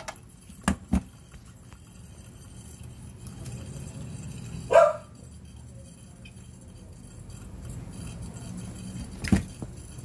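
Light metallic clicks and knocks from handling the air conditioner and its brass gauge manifold, two near the start and one near the end, over a low steady background hum. About five seconds in there is one short bark-like call.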